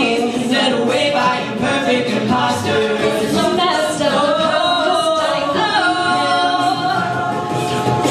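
A live a cappella group of men and women singing in harmony, with vocal percussion from a beatboxer keeping a steady beat under the voices.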